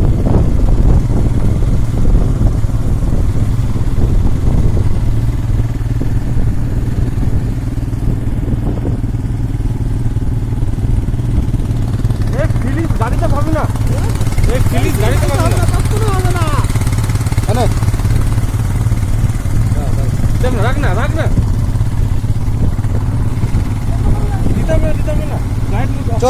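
Motorcycle engine running steadily while riding, heard from on the bike itself along with low wind and road rumble. About halfway through, a voice calls out for a few seconds, and again briefly a little later.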